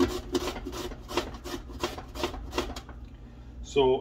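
Cucumber drawn quickly back and forth over a julienne slicer, a fast run of short cutting strokes, several a second, that stops nearly three seconds in.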